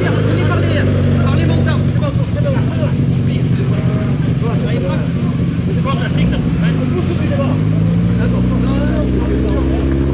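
Rally car's engine running at a steady idle under a crowd of people calling out to each other. About seven seconds in, the engine revs rise in pitch.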